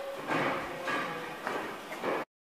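Footsteps on a hard floor in a large, echoing engine shed, about four steps, over a steady background of hall noise.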